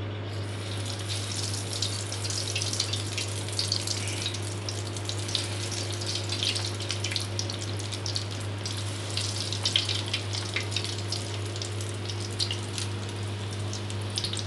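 Breaded chicken-and-potato kebabs sizzling and crackling in hot oil in a frying pan. The sizzle starts just after they go in and keeps up a steady crackle of small pops over a steady low hum.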